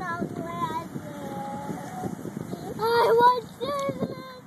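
A young child's high-pitched voice, vocalising and talking indistinctly, loudest in a burst about three seconds in, over steady outdoor background noise.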